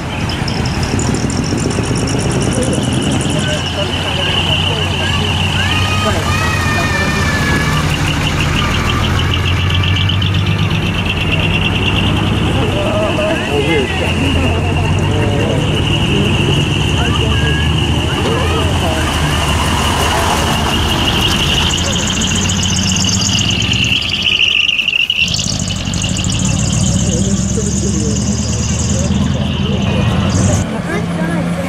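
Heavy trucks' diesel engines running steadily as the trucks pull slowly away, with a steady, wavering high-pitched tone over them and voices in the crowd; the sound drops out briefly about 25 seconds in, then resumes.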